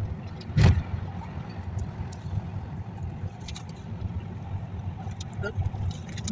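Steady low road rumble heard from inside a moving road vehicle, with a single sharp thump a little over half a second in.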